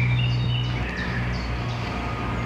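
Small birds chirping, a run of short falling calls, over a steady low hum.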